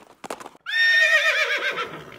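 Horse whinnying: a few hoof clops, then one long, wavering neigh about half a second in that falls in pitch and fades.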